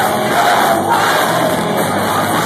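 Crowd voices shouting loudly over a rock band playing live with electric guitars, bass and drums, recorded from among the audience.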